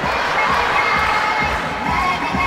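Live audience cheering and shouting, which swells up suddenly at the start, over music with a steady beat.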